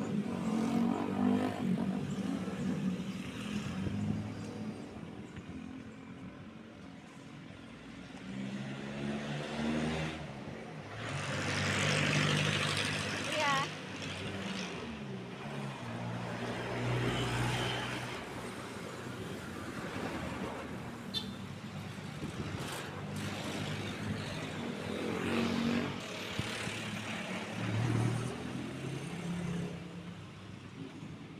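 Road traffic passing close by: cars, a box truck and a jeepney driving past, their engines growing louder as each one nears and fading as it goes, several times over.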